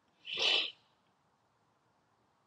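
A woman's short breathy exhale through pursed lips, a single hoo-like puff of about half a second shortly after the start.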